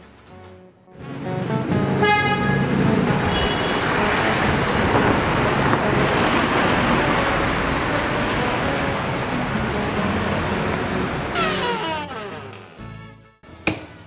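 Busy city street traffic noise, with a car horn tooting about two seconds in and again shortly after.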